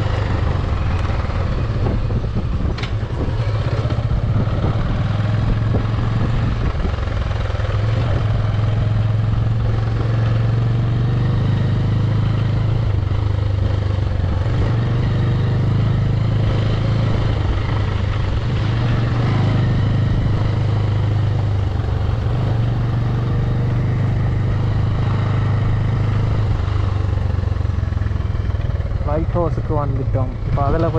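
Motorcycle engine running steadily while riding along a rough dirt track, its note dipping and picking up again a few times, under a steady hiss of wind and road noise.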